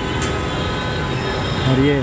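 Busy street traffic: a steady mix of engine and tyre noise with faint steady tones. A man's voice begins near the end.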